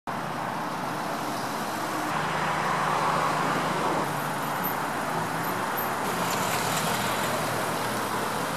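Slow-moving cars passing close by: a steady hum of engines and tyres that swells a little a couple of seconds in, then eases.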